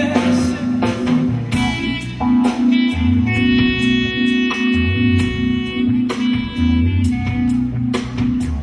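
Live jazz-fusion band of marimba, drums, basset horn and keyboards playing an instrumental passage. A steady pulsing low note figure runs over a bass line and drum strokes, with a long held higher tone through the middle.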